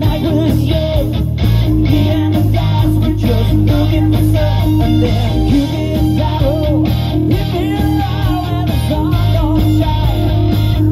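Rock band playing live with distorted electric guitars, bass guitar and drums, loud and steady, with a wavering melodic line above the chords.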